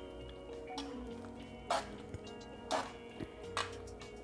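Soft background music, with about four brief scraping swishes roughly a second apart from a spoon stirring the chili mixture in a Dutch oven.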